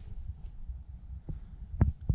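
Low, irregular rumble of a handheld camera being carried on foot through a brick cellar, with a few dull thumps of footsteps in the second half, the loudest just before the end.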